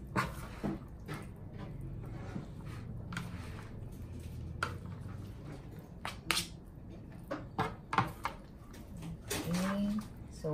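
A plastic spatula tossing cooked penne and pesto in a plastic bowl: soft wet stirring with irregular clicks and knocks against the bowl.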